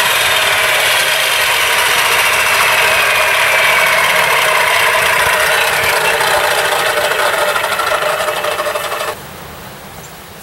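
Electric miter saw motor with a whine that falls slowly in pitch as the blade winds down after cutting PVC pipe. The noise cuts off suddenly near the end.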